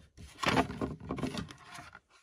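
A fingernail rubbing back and forth across a hardener-cured 10-sheen lacquer topcoat on a painted cabinet door, an irregular scratchy rubbing for most of the two seconds. It is a burnishing test, and the catalysed finish is not marked by the rubbing.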